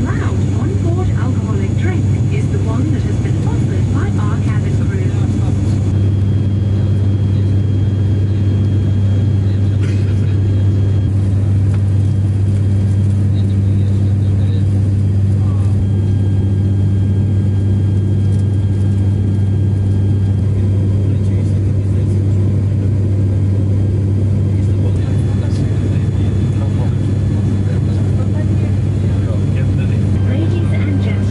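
Cabin drone of an ATR 72-600 turboprop in flight: a loud, deep, steady hum from its six-bladed propellers and engines, unchanging throughout.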